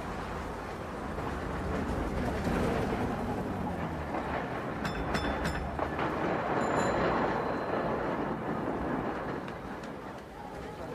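Busy street ambience with a streetcar running along its rails, a steady rumble that swells through the middle. There are a few sharp clicks about five seconds in and a short ringing tone near seven seconds.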